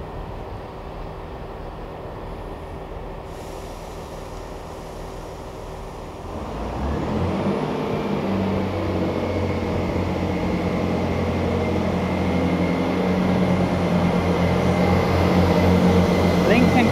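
Class 158 diesel multiple unit idling at the platform, a steady low hum. About six seconds in, its underfloor diesel engines open up and the unit pulls away, the engine note growing steadily louder as the coaches come past.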